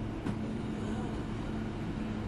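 A steady low droning hum, with one faint click a little after the start.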